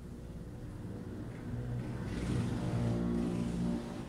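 A motor vehicle's engine, growing louder to a peak in the second half, then dropping away sharply near the end.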